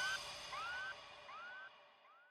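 The fading echo tail of an electronic music outro: a short rising synth tone repeats about every three-quarters of a second, each repeat quieter than the last, dying away.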